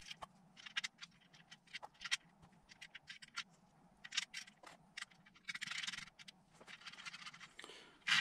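Faint, scattered clicks and short scrapes of a car alternator's housing and bolts being handled and turned over on a cardboard-covered bench, with a longer scrape a little past halfway through.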